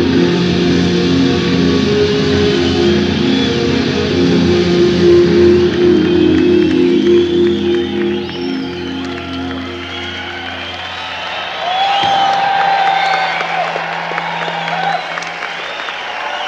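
Live rock band, led by electric guitar, holding a sustained closing chord that stops about eleven seconds in, followed by a concert crowd cheering and applauding.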